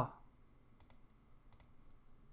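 Faint clicking at a computer: two quick pairs of clicks, the first under a second in and the second about a second and a half in. The last word of a man's recitation trails off at the very start.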